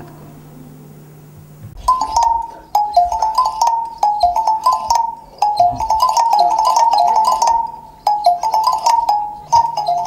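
A small musical toy playing a simple high, tinny melody of clear stepped notes. It starts about two seconds in and repeats in short phrases with brief gaps.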